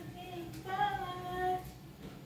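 A woman singing a few long-held notes, the last one held for about a second and stopping shortly before the end.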